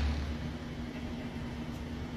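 Background music fading out at the start, leaving a steady low hum with a faint rumbling noise underneath.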